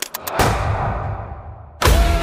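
Trailer sound design: a fast run of sharp clicks, then a single heavy boom whose ringing tail fades and grows duller for over a second, before a loud hit brings the music back in just before the end.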